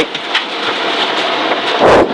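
In-cabin road noise of a Subaru Impreza rally car rolling and slowing on a wet gravel road: an even rushing of tyres and spray, with a heavy thump just before the end.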